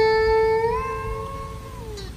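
Electric guitar sustaining a single note that is bent up in pitch about a third of the way in, held, then let back down near the end as it fades away. This is the expressive bending ornament of Vietnamese traditional (cải lương) guitar playing.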